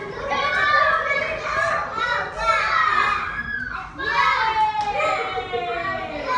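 A group of toddlers playing and calling out, their high voices overlapping one another.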